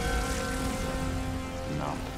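Film soundtrack drone: held, steady tones over a constant deep rumble, with a brief wavering pitched sound near the end.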